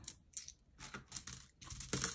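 A scatter of light clicks and taps as coins are picked out of a coin tray and handled, counting out a dollar in quarters.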